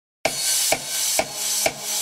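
Opening of an electro house track: after a brief silence, a steady beat of sharp electronic percussion hits, about two a second, over a hissy high wash.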